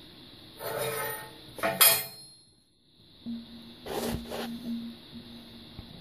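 Small cut pieces of steel angle iron clinking and scraping as they are handled, in two short bursts with some metallic ringing. After a brief silence a faint steady hum sets in, with two sharp knocks in the middle of it.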